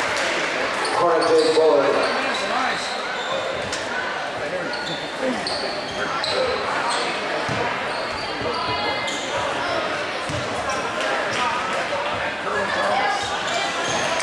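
Basketball bouncing on a hardwood gym floor as a player dribbles at the free-throw line, under the echoing chatter and shouts of a gymnasium crowd. A louder shout comes about a second in.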